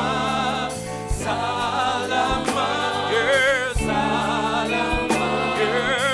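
A gospel praise team of several voices singing in unison over a live band, with steady bass notes and drum hits about once a second.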